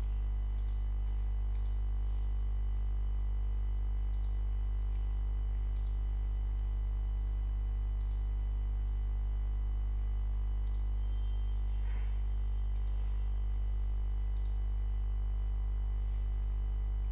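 Steady low electrical hum with a constant high-pitched whine above it, and a few faint ticks.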